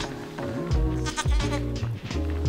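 A sheep bleats about a second in, over background music with a steady bass beat.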